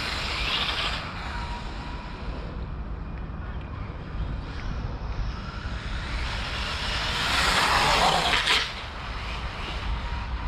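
Brushless electric RC buggy (Hobbywing 3652 5200kv motor on a 3S LiPo) being driven fast on asphalt, a hissing run of motor and tyres that swells to its loudest about seven to eight and a half seconds in, then drops away suddenly. A steady low wind rumble sits on the microphone underneath.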